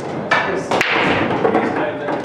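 Busy pool-hall chatter from a crowd of voices, with two sharp knocks about a third of a second and just under a second in.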